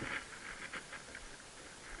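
Faint, irregular patter of shallow water lapping and splashing, a scatter of small soft ticks with no steady rhythm.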